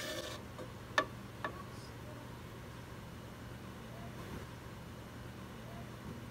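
A metal spoon clinking against a steel pot three times while pressing and stirring tea bags in hot water; the middle clink rings briefly. After that only a faint steady low hum.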